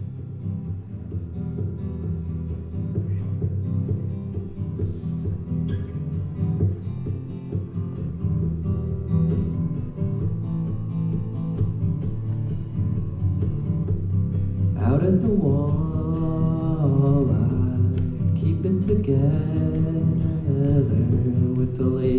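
Solo steel-string acoustic guitar playing a song's intro, with a man's voice joining in about fifteen seconds in.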